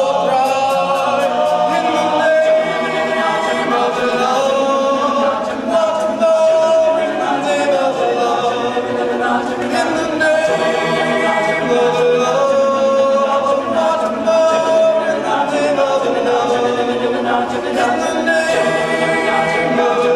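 All-male a cappella group singing in close harmony, several voices holding chords that change every second or two.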